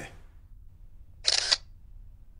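A camera shutter clicks once, a little over a second in, as a photo is taken.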